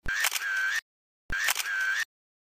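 Camera shutter sound effect, a sharp click followed by a short motor whir, played twice with a silent gap between. Both plays are identical.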